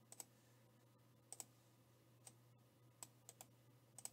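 Faint computer mouse clicks against near silence, about nine in all, several in quick pairs like double-clicks.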